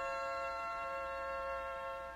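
Violin and cello holding a long final chord steadily.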